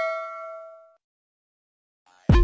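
A bell-like ding sound effect from a subscribe-button animation, one pitched chime ringing out and fading away within about a second.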